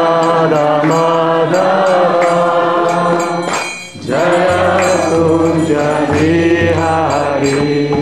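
Devotional kirtan chanting sung in long held notes, breaking off briefly about four seconds in before it resumes.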